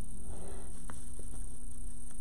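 Steady low room hum, with a faint rustle and two light ticks as the loops of a red ribbon bow are handled and fluffed.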